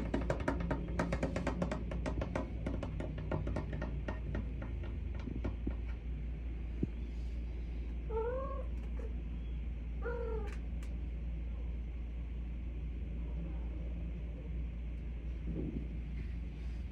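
Sphynx cat meowing twice, two short calls that rise and fall about two seconds apart, around the middle. A rapid run of clicks comes before them in the first few seconds.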